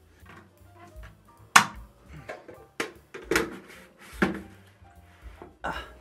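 Round plastic ceiling light cover being pushed and fitted back onto its base: a series of sharp plastic knocks and clicks, the loudest about a second and a half in, with quiet background music underneath.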